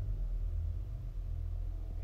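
A low, steady hum with a faint hiss above it, unchanging throughout.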